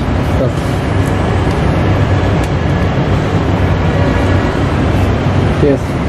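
Handling noise on a clip-on wireless microphone as it is unclipped from a shirt and moved by hand: a steady, loud rubbing rumble, deepest in the low end.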